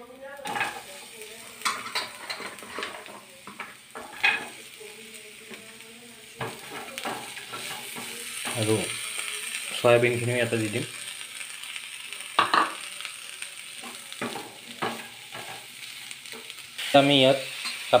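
Onions sizzling in oil in a non-stick pan while a spatula stirs and scrapes them in short strokes. About ten seconds in, chopped mixed vegetables are tipped in and the frying sizzle grows louder as they are stirred.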